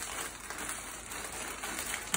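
Clear plastic bag crinkling steadily as hands work it open.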